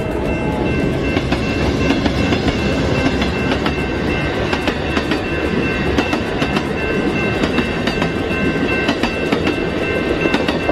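Amtrak passenger train of bilevel coaches rolling past over a grade crossing, its wheels clicking irregularly over the rail joints. A few steady high ringing tones sound over the rumble throughout.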